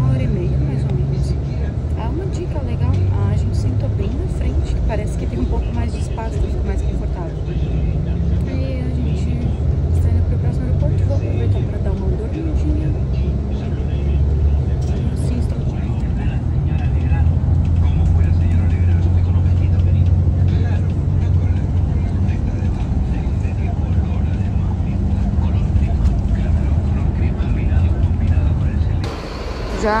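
Steady low rumble of a coach bus's engine and road noise, heard from inside the passenger cabin while the bus is moving.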